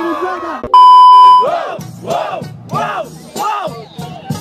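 A loud, steady electronic bleep lasting under a second, then a hip-hop instrumental beat with repeated rising-and-falling notes comes in.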